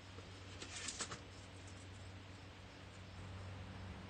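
Hands handling craft supplies: a brief rustle a little under a second in, as a glue dot is fetched, over a faint steady low hum.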